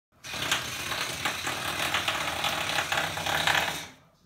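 Whoopee cushion being squeezed flat, letting out one long fart noise: a rapid rasping flutter that lasts about three and a half seconds and fades as the air runs out.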